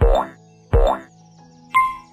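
Cartoon 'boing' pop sound effects as quiz answer buttons appear, two of them about three-quarters of a second apart, each a quick falling-pitch twang with a low thump; near the end comes a short high beep.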